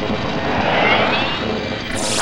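A science-fiction sound effect: a loud rushing noise that swells, with a rising whine about halfway through and a sharp blast right at the end.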